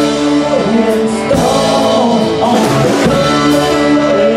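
Live country-roots band playing a song: electric guitar, acoustic guitar, electric bass and drum kit, with cymbal hits.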